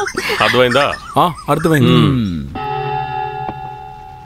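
A man's voice speaks briefly, then a sustained bell-like chord of steady ringing tones sets in just past halfway and slowly fades across a scene change.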